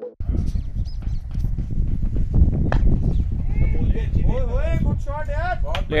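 Open-air cricket match with wind buffeting the microphone, a single sharp crack of bat on ball nearly halfway through, then players shouting in rising and falling calls, louder toward the end, as the shot runs for four.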